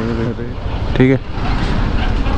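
Honda motorcycle engine running with a steady low rumble and a haze of wind and road noise, under two short bursts of a man's speech.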